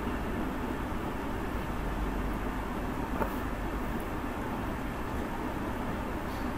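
Steady background noise, a low rumble under an even hiss like fans or machinery running, with one faint click about three seconds in.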